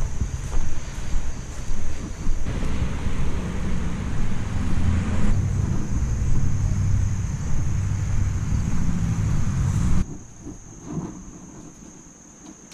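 Wind buffeting a body-worn camera's microphone, a loud low rumble that cuts off abruptly about ten seconds in.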